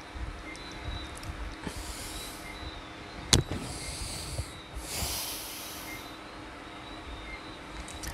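Two soft, breathy nasal exhales, a stifled laugh, about two seconds in and again around five seconds. A single sharp click falls between them.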